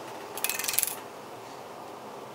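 A brief, rapid clatter of small hard objects, lasting about half a second, starting under half a second in, over a steady background hum.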